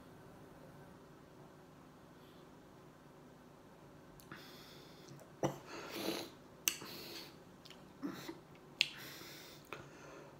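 Quiet drinking from a glass of beer, then, about halfway in, lip smacks, sharp mouth clicks and short breaths as the drinker tastes it.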